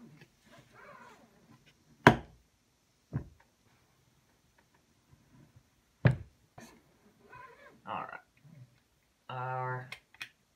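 A single-stage reloading press worked by its lever on a 9mm Luger case. It gives sharp metallic knocks about two seconds in, a second later, and again around six seconds. The stroke fails to push out the primer because the decapping pin is not set low enough.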